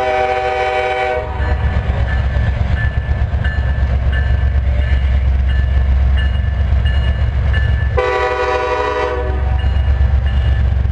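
Norfolk Southern diesel freight locomotive sounding its air horn in two blasts of about a second each, one right at the start and one about eight seconds in, over the steady low rumble of its engine and train passing close by.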